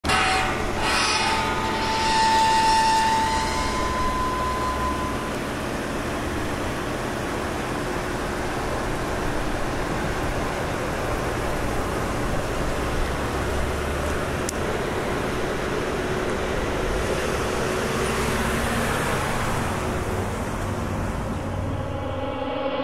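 A few ringing tones in the first seconds, one of them held for a second or two and rising slightly, then a steady rumbling noise like machinery or traffic that goes on unbroken, with a faint click about two-thirds of the way in.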